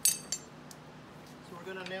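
Two sharp metallic clinks with a bright ring, about a third of a second apart: a farrier's hammer striking a steel horseshoe held against a horse's hoof as the shoe is tacked on.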